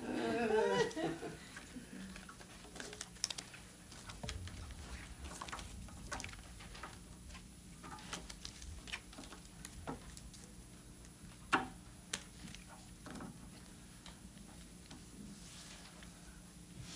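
Soft scattered clicks and rustles of playing cards being gathered and shuffled on a card table, with one sharper click about two-thirds of the way through.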